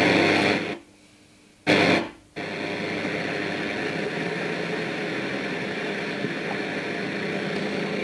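Silvia New Wave 7007 radio-cassette recorder's radio hissing with static from its speakers, tuned between stations. The hiss cuts out for about a second shortly after the start, comes back in a short burst, drops out again briefly, then runs on steadily while the tuning knob is turned.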